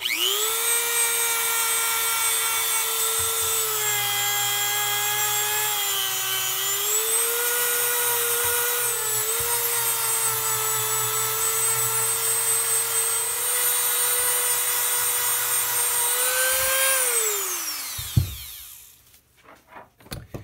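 Dremel rotary tool with a small buffing wheel, polishing a cast-aluminium rocker box coated in metal polish. It spins up to a steady high whine, and the pitch sags a few times as the wheel is pressed into the metal. Near the end it is switched off and winds down to silence.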